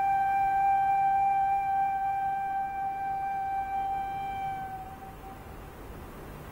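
Background music: a flute holding one long steady note that fades away about five seconds in.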